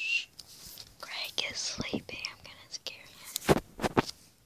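A child whispering softly, followed by a few sharp knocks near the end from the phone being handled.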